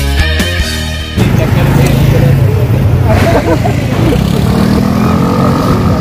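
Rock music cuts off about a second in, giving way to vehicle engines running, with a slow rise in engine pitch near the end, mixed with the voices of a crowd.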